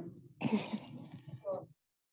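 A person clearing their throat for about a second, ending with a short vocal sound, then the sound drops away.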